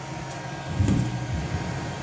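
Steady electrical and fan hum from an energized industrial motor-control panel, with thin steady tones above the hum. A brief low rumble comes about a second in.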